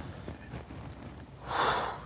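A single short, sharp breath out through the nose, like a snort or stifled laugh, about a second and a half in, after low room tone.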